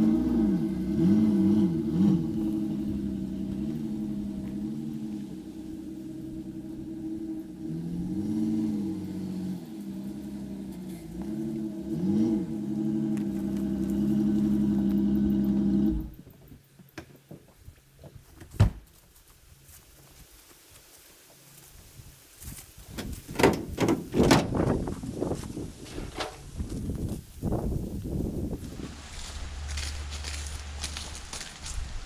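Chevrolet pickup truck engine running as the truck is backed into position, its note rising and falling a few times, then switched off abruptly about halfway through. A single sharp bang follows a couple of seconds later, and near the end comes a run of knocks and clunks as the tailgate is lowered and the ramps are handled.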